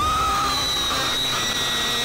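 A long, high-pitched scream that starts suddenly and is held steadily throughout.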